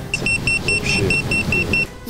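A rapid, even series of short, high electronic beeps, about five a second, stopping just before the end, over a low rumble.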